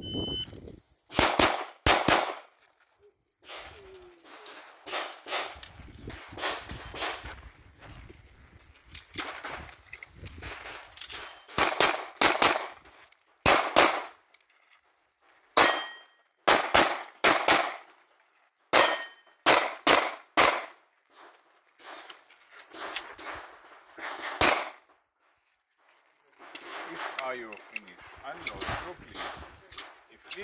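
A shot timer's short high beep at the start, then a Production-division semi-automatic pistol fired in quick pairs and strings, with brief pauses between strings, until about 25 seconds in.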